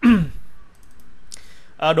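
A man's short falling vocal sound, like the tail of a laugh, then a few faint computer-mouse clicks; his speech starts again near the end.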